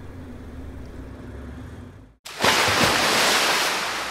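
A low background hum for about two seconds, then a brief dropout and ocean surf washing onto the beach. The surf comes in loud and starts to fade near the end.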